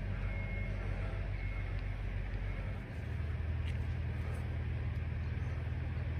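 Low, steady rumble of a nearby motor vehicle engine running, its pitch shifting slightly about three seconds in.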